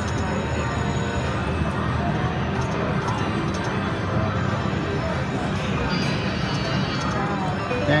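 Konami video slot machine's free-games bonus music and reel sounds playing steadily as the reels spin, over the background noise of a casino floor.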